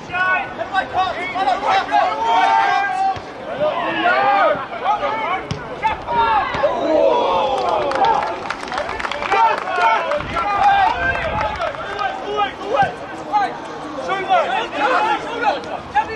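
Many voices shouting and calling out over each other across a football pitch, with continuous crowd chatter; no single voice stands out.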